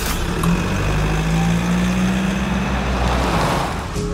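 A vehicle engine running, its low tone slowly rising in pitch, with a broad rushing noise that fades near the end before cutting off abruptly.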